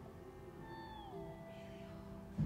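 Faint background music: sustained notes, one of which slides down in pitch about a second in and then holds.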